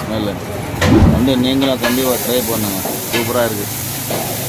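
Food sizzling on a restaurant's flat-top griddle under several people talking, with a low thump about a second in.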